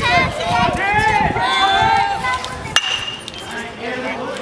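Voices shouting, then a bat striking a baseball about three-quarters of the way through: one sharp crack with a short ringing ping.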